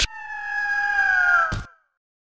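Intro logo sound effect: a sharp hit, then a clear held tone that sinks slowly in pitch for about a second and a half, closed by a second hit that dies away quickly.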